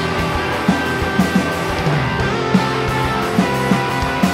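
Live rock band playing: electric guitars holding ringing notes over drum hits.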